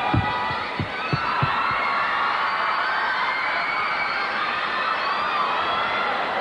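Arena crowd cheering and whooping, with a few low thumps of a music beat in the first second and a half.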